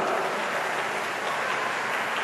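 A congregation applauding steadily, a dense even patter of many hands clapping.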